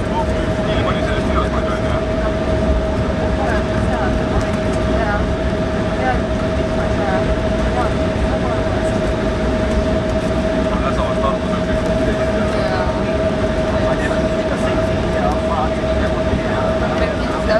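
Cabin noise inside an Embraer 170 rolling down the runway after touchdown, spoilers raised: a loud, steady rumble from the wheels and the GE CF34 engines with a steady whine running under it.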